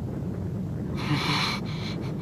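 A single breathy exhale, a short puff of air about a second in, over a low steady background rumble.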